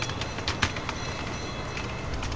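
Computer keyboard keys clicking as a word is typed, a few sharp clicks with the clearest about half a second in, over a steady low background rumble.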